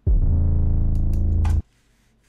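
A single 808 bass note played back from an 808 track in a DAW. It is a low, sustained tone with a sharp attack that cuts off suddenly after about a second and a half, with a short click just before it stops.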